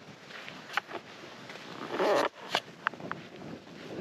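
Camera microphone handling noise as the camera is turned round: a few light knocks and one loud rubbing scrape about two seconds in.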